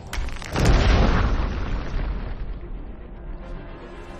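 Film sound effect of a magic blast striking cave rock: a few sharp cracks, then a deep boom about half a second in, with a rumble that fades over the next second or two, over background music.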